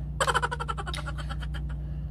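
A woman's quick run of breathy, out-of-breath pulses lasting about a second, over a steady low hum.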